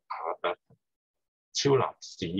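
A man's voice heard through a video call: two short bursts of hesitant, halting vocal sounds with near-total silence between them.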